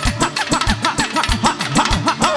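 Fast percussion solo on a set of tom drums struck with sticks, many strokes falling in pitch, within loud live band music.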